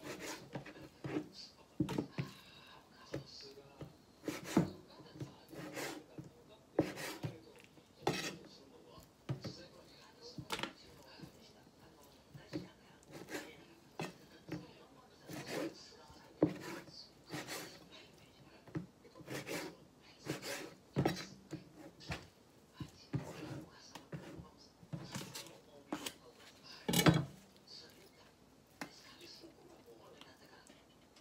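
Kitchen knife slicing raw pork on a cutting board: a run of irregular light knocks as the blade meets the board, with one louder knock near the end.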